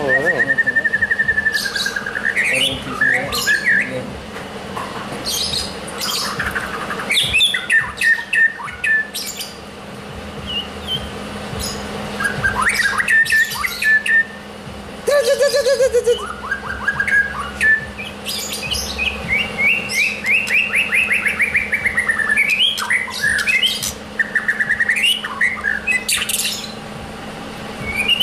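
Caged white-rumped shamas (murai batu) singing without a break: varied whistled phrases, fast rattling trills and sharp clicking calls, one phrase following another.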